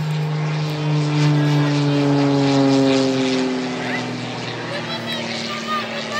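Propeller biplane's engine droning overhead in flight, its pitch sliding slowly down as it passes.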